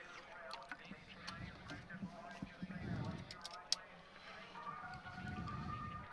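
Faint background voices at low level with light outdoor ambience and a few small clicks.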